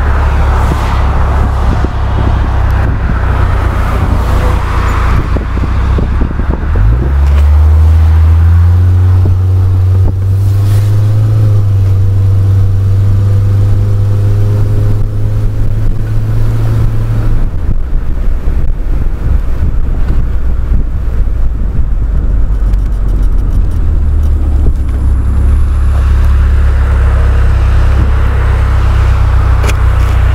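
A car engine and rushing wind heard from inside an open-top car while driving. About seven seconds in, the engine note rises as the car accelerates and holds steady for about ten seconds before settling back.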